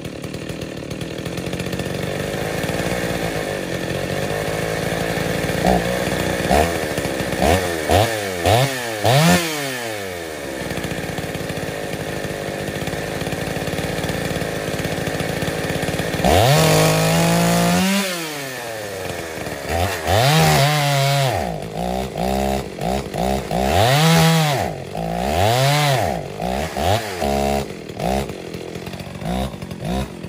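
Ported Dolmar 116si two-stroke chainsaw with a 25-inch bar cutting a large log. It runs steadily at high revs with a few quick dips at first, then after about half-way repeatedly revs up and drops back, roughly every second and a half to two seconds. The owner puts its misbehaving down to a fouling spark plug or a fuelling issue.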